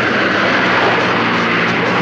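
Sports car engines running hard as they race past, a steady rushing engine noise.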